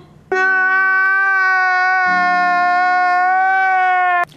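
A man's loud, drawn-out crying wail held at one steady pitch for nearly four seconds, starting abruptly just after the start and cutting off suddenly at the end.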